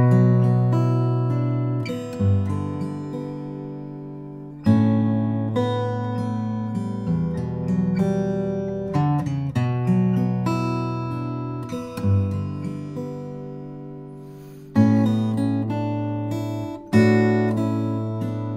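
Steel-string acoustic guitar played slowly in fingerstyle: arpeggiated chords of a B minor progression (Bm, G, A, Em) with a melody on the upper strings. Each new chord opens with a bass note plucked by the thumb, and the notes are left to ring.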